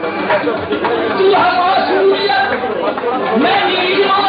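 Several men's voices from a qawwali group sounding together, overlapping, with a few held notes among them.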